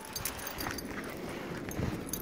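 Faint footsteps of a dog's paws on a shoveled concrete walk, with a few light clicks.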